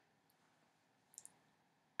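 Near silence: room tone, with a few faint, short clicks, the clearest just past the middle.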